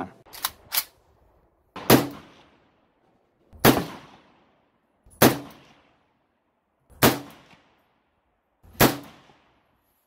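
Five single rifle shots from an Izhmash Saiga in 7.62x39, evenly spaced about 1.8 s apart. Each is a sharp crack followed by a short fading echo. Two faint clicks come just before the first shot.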